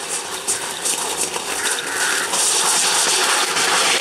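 A pair of racing bulls galloping past with their wooden sledge dragging over dry dirt: a rushing, rumbling noise that grows steadily louder.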